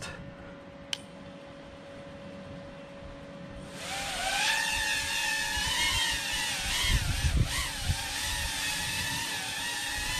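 A single click about a second in, then the BetaFPV Pavo 25 V2's four motors spinning their ducted two-and-a-half-inch props up about four seconds in. The quadcopter lifts into a hover with a high whine whose pitch wavers with the throttle.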